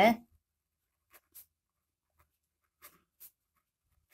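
Pen writing on a notebook page: a few faint, short strokes, two around a second in and two more near three seconds.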